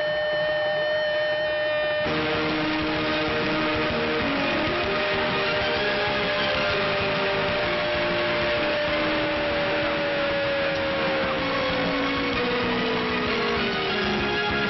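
A football commentator's long drawn-out "gooool" shout celebrating a goal, held on one pitch for about ten seconds, then falling in pitch near the end. Held notes of music sound underneath.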